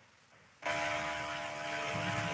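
Silence for about half a second, then a steady electrical buzz with a hum of many even overtones, picked up by an open microphone on a video call.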